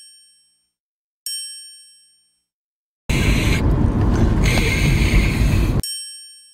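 A bright bell-like chime sound effect rings and fades, once about a second in over dead silence and again near the end. In between, from about three seconds in, the low road rumble of a moving car's cabin.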